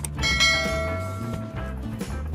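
A click, then a bright bell-like chime that rings about a quarter second in and fades over about a second and a half: the notification-bell sound effect of an animated subscribe button. Background music plays underneath.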